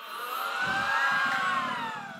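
Studio audience making a drawn-out 'aww' together, one long call that rises and then falls in pitch, in reaction to a romantic answer.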